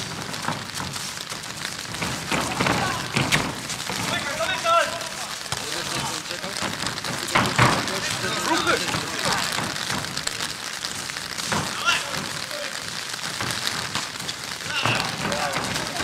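Small-sided street football on artificial turf: scattered players' shouts and a few sharp ball kicks over a steady outdoor hiss.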